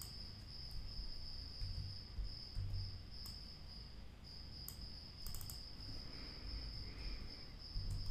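A faint, steady high-pitched whine with low rumble beneath it, and a few computer mouse clicks, including a quick run of clicks about five seconds in.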